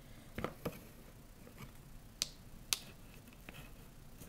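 Faint handling of nylon 550 paracord while tying cobra knots: soft rustling as the strands are pulled through, with a few sharp clicks, the loudest two a little past the middle.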